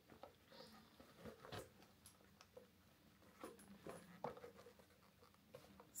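Faint handling sounds of a phone being worked into a small handbag: soft rustles and scattered light ticks and scrapes against the bag's opening.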